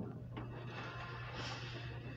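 Faint in-store background music over a steady low hum.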